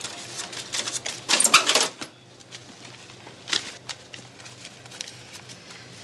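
Handling noise: a quick run of small clicks and rattles in the first two seconds, loudest about a second and a half in, then one more sharp click a little past halfway and a few faint ticks.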